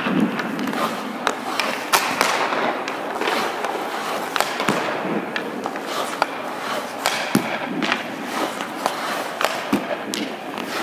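Ice hockey shooting drill: sharp, irregular cracks of stick on puck and puck against a goaltender's pads, over the scrape of skate blades and pads on the ice.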